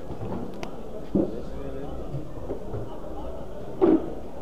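Background voices and chatter of people at a busy flea market. Two short, louder sounds stand out, one just over a second in and one near the end.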